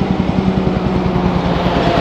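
Diesel engine of a dump truck drawing close, a steady low rumble with rapid, even pulsing that grows slightly louder.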